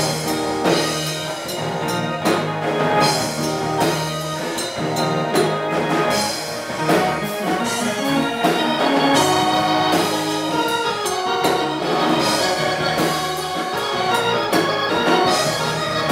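Live rock band playing an instrumental passage: electric guitar, bass guitar, keyboard and a drum kit with cymbal hits, with no vocals.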